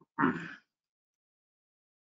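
A man's single short throat noise, a grunt-like clearing of the throat about half a second long, near the start.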